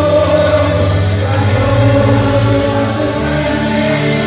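Gospel music: a group of voices singing over held chords and a steady bass line.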